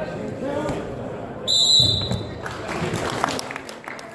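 Referee's whistle: one short shrill blast of about half a second, halfway through, over spectators' shouts at a wrestling match. Scattered claps follow.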